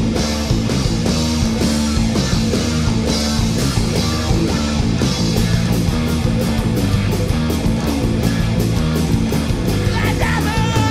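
Live rock band playing an instrumental stretch without vocals: electric guitars over bass and drums, the drum hits coming quicker in the second half.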